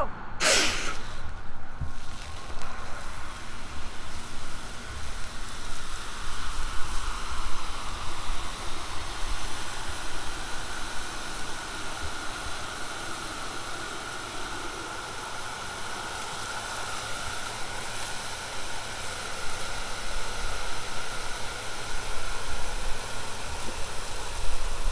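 Steady hiss of water jetting from a firefighter's handline nozzle on a charged 200-foot crosslay hose, after a short burst of noise about half a second in.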